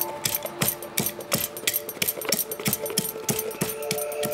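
Pestle knocking in a mortar, sharp irregular knocks about four a second, over ambient music with long held tones.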